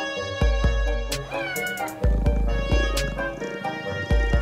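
Background music with a steady beat, and a cat meowing once about a second in.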